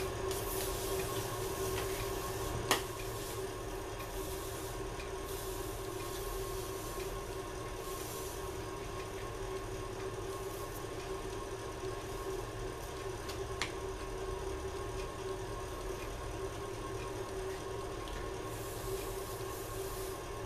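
Thin padauk veneer rubbing against a hot bending iron as it is pressed and worked by hand, over a steady hum and hiss. A sharp click sounds about three seconds in and another a little past the middle.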